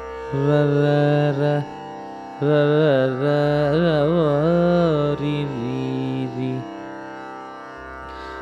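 Male Carnatic vocalist singing a raga alapana that blends the ragas Sahana and Kanada, the notes sliding and oscillating in gamakas, over a steady drone. Three phrases with short breaks between them, the last one softer.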